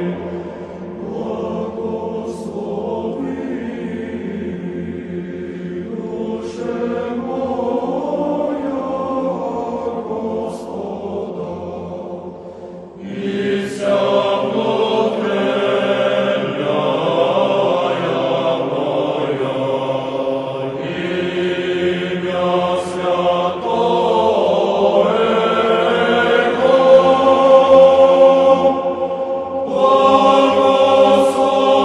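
Choral music of sustained, layered voices, swelling louder and fuller about halfway through.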